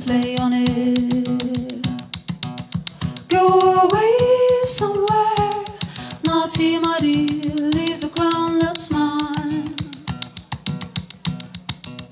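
Live electro-pop song: acoustic guitar picked in a fast, even rhythm, with a woman's voice singing long held notes over it.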